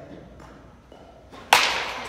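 A bat striking a pitched ball once, about one and a half seconds in: a sharp crack that rings and fades away slowly.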